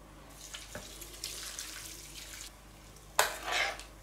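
Boiling water poured from an electric kettle onto a bowl of chopped nettle and ground elder leaves, a steady soft splashing, with a short louder burst of noise near the end.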